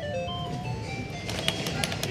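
Fruit slot machine (maquinita) playing its electronic beeping tune as the light runs round the ring of symbols, the notes stepping in pitch and slowing as the light comes to rest.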